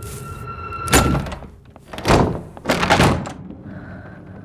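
Three heavy thuds: a sharp one about a second in, then two longer, louder ones at about two and three seconds.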